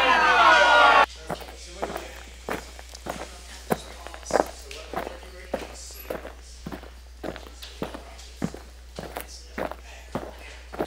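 Footsteps walking at an even pace, about two to three steps a second, after a burst of overlapping voices that cuts off suddenly about a second in.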